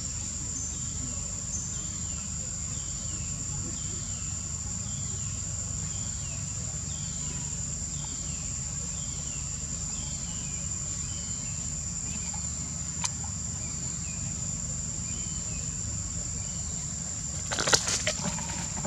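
A steady, high-pitched insect drone throughout, with a short falling note repeated about every two-thirds of a second for the first twelve seconds, a single click later on, and a brief louder burst of noise near the end.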